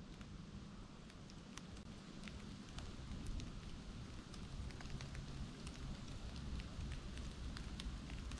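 Outdoor rustle: a low, uneven rumble, as of wind buffeting the microphone, with many scattered light crackling ticks, like dry leaf litter and twigs. It grows a little louder from about three seconds in.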